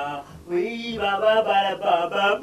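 A man's voice calling out in long, drawn-out, sing-song vowels, with no music under it.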